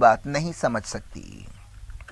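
A man's voice reading the news in Urdu, ending a phrase about a second in, followed by a pause with only faint room tone.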